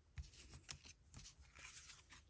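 Near silence, with a few faint clicks and a soft rustle of trading cards and plastic sleeves being handled.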